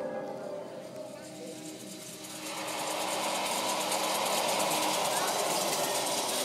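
A film soundtrack: bell-like music dies away, then about two and a half seconds in a loud rushing noise with a fast, fine rattling texture swells up and holds steady.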